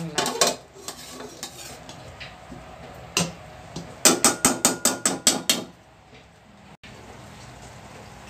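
Spatula stirring sardines in sauce in a steel wok, scraping and clinking against the pan. There are a few separate knocks early, then a quick run of about ten taps in under two seconds around the middle.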